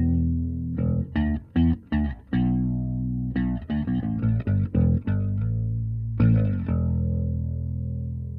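Electric bass guitar played through a Line 6 POD Express Bass with its chorus effect on: a run of plucked notes, then one held note that rings on near the end.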